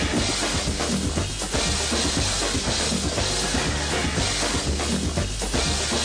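Music with a steady drum-kit beat of bass drum and snare, the backing track of a roller-skating dance routine.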